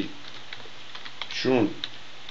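Computer keyboard typing: a few scattered, light key clicks, with one short spoken syllable about one and a half seconds in.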